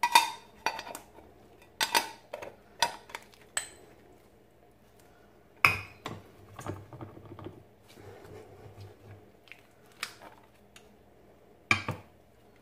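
Metal parts of a hand hamburger patty press clicking and clinking against each other as the ring and ridged lid are handled: a string of sharp, separate knocks, the loudest just after the start, about six seconds in and near the end.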